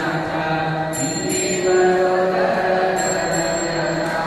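Hindu devotional mantra chanting, steady and melodic, with a bright bell-like jingle recurring about every two seconds.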